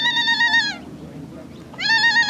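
Long, high-pitched celebratory cries from a woman's voice. One held note slides down and stops just under a second in, and a second cry slides up and holds near the end.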